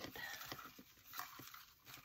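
Fingers sorting through paper scraps in a clear plastic tub: faint rustling with a few light taps and clicks.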